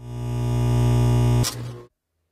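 Logo-sting sound effect: a steady, low electronic buzzing drone with many overtones. It swells in over the first half second, holds, then drops away about a second and a half in with a brief fading tail.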